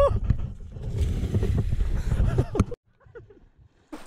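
Low rumbling buffeting on the microphone of a camera on a boat's deck, with scuffling and brief shouts. About three seconds in it cuts off to near silence.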